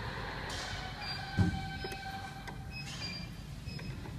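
Small screwdriver scraping and turning in the screws of a heat press's controller faceplate, with one dull knock about one and a half seconds in, over a steady low workshop hum.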